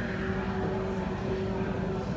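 A steady low drone with a few held low tones over a rumble.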